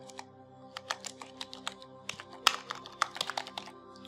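Typing on a computer keyboard: key clicks in short uneven runs as a word is entered. Soft background music plays underneath.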